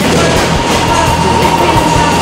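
Two bowling balls rolling down adjacent lanes together, a steady loud rumble, with background music under it.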